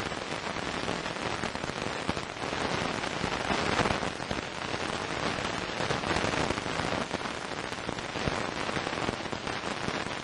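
VLF radio recording of lightning sferics played back as audio: a dense, continuous crackling of sharp pops over a steady hiss, each pop the radio impulse of a distant lightning stroke in the storm.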